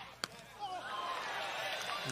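A single sharp thud of a soccer ball being struck about a quarter second in, followed by a faint background of distant voices from the field and stands.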